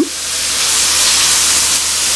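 Sliced roast beef with onions and bell peppers sizzling in butter in an electric skillet, a steady hiss while it is tossed with a spatula.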